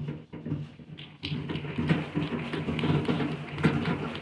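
Audience applauding, swelling in about a second in and going on densely.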